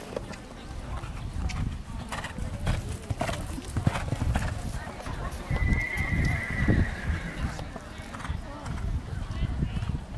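A horse cantering on a dirt arena, its hoofbeats landing as dull thuds in a steady rhythm, then taking a jump near the end. About halfway through, a long high tone sounds for nearly two seconds, slowly falling in pitch.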